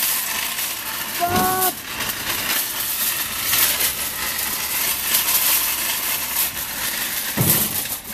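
Wire shopping cart rolling over asphalt while towed on a rope, its casters and metal basket rattling steadily. A short vocal sound comes about a second and a half in.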